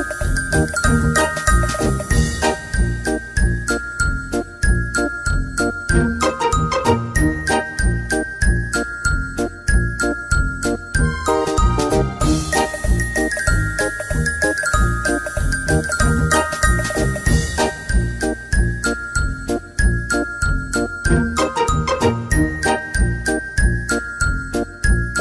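Background music: a light, tinkly tune over a steady beat, its phrase of falling note runs starting over about halfway through.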